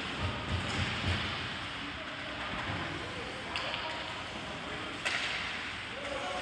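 Ice rink game sound: a steady wash of skates on ice and distant players' voices, with two sharp cracks from sticks and puck in play, about three and a half and five seconds in.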